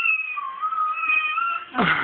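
A domestic cat giving one long, high, wavering meow that sweeps up at its onset and holds for about a second and a half, followed just before the end by a louder, shorter burst.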